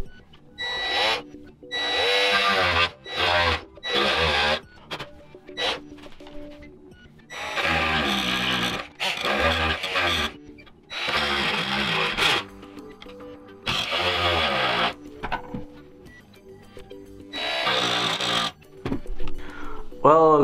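Ryobi oscillating multi-tool with a wood-and-metal blade cutting into the plastic end of a PCIe slot on a server riser card, in about ten loud bursts of up to a second and a half as the blade bites, with a quieter steady buzz between them.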